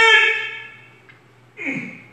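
A voice holding one long, high, steady note that fades away within the first second, then a short breathy sound near the end.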